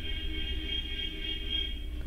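A pause in speech: a steady low background hum with a few faint held high tones, unchanging throughout.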